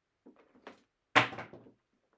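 A pair of casino dice thrown down a felt craps table: a few light taps as they land and bounce, then one loud knock about a second in as they strike the pyramid-studded back wall, and a short ringing after it.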